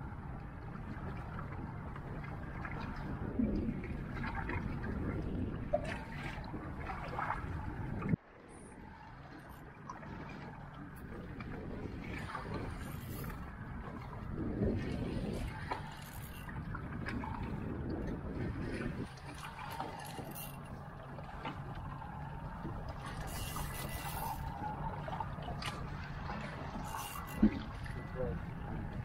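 Wind and sea water washing against a boat on open water, with a faint steady low hum. The noise drops off abruptly about eight seconds in and then builds back.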